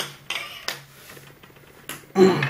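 Thin aluminum gimbal top plate handled and set down on a tabletop: a few sharp, light metallic clicks and clatters, the loudest at the very start and one more just before the end.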